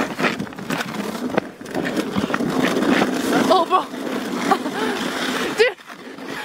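A sled sliding and scraping over snow-dusted river ice, a steady rough rushing noise broken by small knocks and bumps. A voice calls out briefly twice, about halfway through and near the end.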